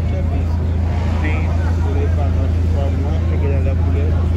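A steady low drone of an idling car engine, most likely the 2005 Volkswagen Polo sedan's 1.6 flex four-cylinder, with a crowd's chatter in the background.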